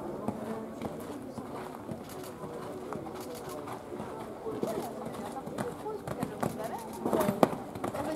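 Indistinct conversation close to the microphone, with the dull hoofbeats of a horse cantering on a sand arena faintly underneath.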